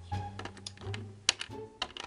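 Several sharp plastic clicks and taps as small plastic toy figurines are handled and knocked against a plastic playset, the loudest a little past halfway, over soft background music.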